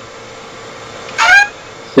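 Steady faint hiss of a video-call audio line, broken about a second in by one short vocal sound from a speaker, a brief murmur lasting about a quarter of a second.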